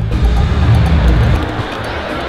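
Music with a heavy bass, loudest through the first second and a half.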